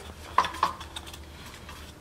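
A Honda GX-series V-twin turned over slowly by hand, with two faint metallic clicks about half a second in over a low steady hum.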